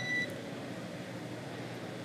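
A single short electronic beep on the radio link at the very start, then the faint steady hiss of the open channel between transmissions.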